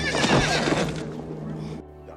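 A horse whinnying, a wavering high call in the first half-second, over low sustained film music; the sound cuts off abruptly just before the end.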